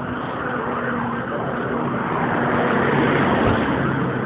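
Road traffic: a motor vehicle going by, its engine hum and tyre noise building for about three seconds and then easing off.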